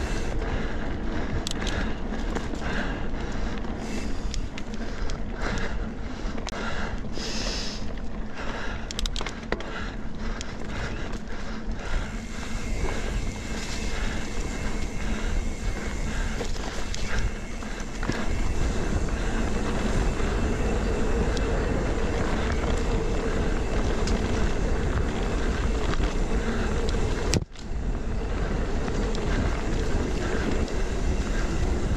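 Mountain bike ridden fast over forest singletrack, heard from a camera mounted on the bike: tyres on dirt and leaves with the bike rattling and clicking over bumps. After about 18 seconds it turns into a louder, steadier low rumble. The sound cuts out for a moment near the end.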